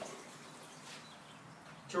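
Faint, steady rush of diluted cleaner running from a wall-mounted chemical dispenser's hose into a mop bucket.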